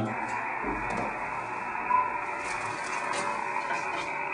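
Steady, narrow-band static hiss from an amateur radio transceiver's receiver, held open on the band while listening for meteor-scatter reflections, with a brief faint burst about two seconds in.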